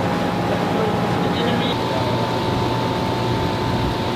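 Steady mechanical hum and rush in a large hangar, with a thin whine that steps slightly higher in pitch about two seconds in.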